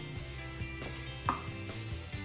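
A wooden pestle pounds cooked cassava in a wooden mortar, making a run of dull knocks; the loudest comes just over a second in.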